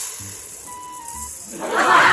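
Uncooked rice grains pouring from a plastic container into a rice cooker's inner pot, a steady hiss. About one and a half seconds in, a louder splashing rush begins as water is poured onto the rice to wash it.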